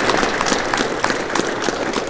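Audience applauding: a dense patter of many hands clapping, easing off slightly toward the end.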